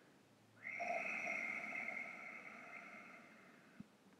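A person's long audible exhale, starting about half a second in and fading away over some two and a half seconds.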